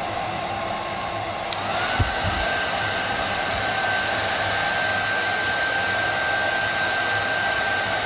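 Handheld hair dryer running steadily, blowing air through a digital turbine flow meter. A thin whine in the sound rises in pitch about two seconds in and then holds, with a single soft thump at about the same moment.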